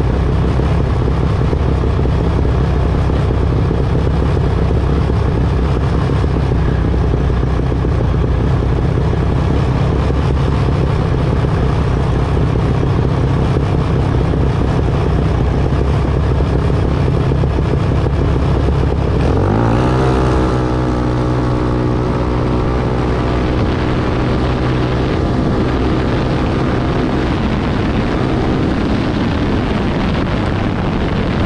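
Junior dragster's single-cylinder engine idling steadily at the start line. About two-thirds of the way through it revs up in a quick rising sweep as the car launches, then holds a steady high note while the car accelerates down the strip.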